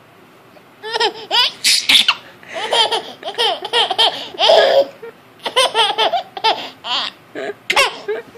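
A baby laughing hard in repeated rapid bursts, starting about a second in, with a short pause just past the middle.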